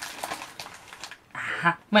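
Plastic packaging of a candy kit crinkling and rustling as it is handled, with a woman's voice coming in near the end.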